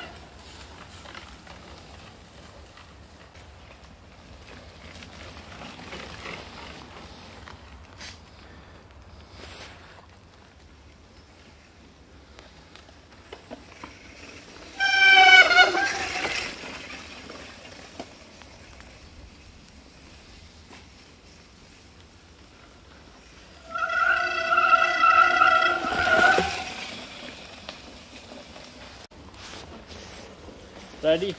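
Mountain-bike disc brakes squealing as riders brake: a short squeal about halfway in, then a longer, steady squeal of about three seconds near the end.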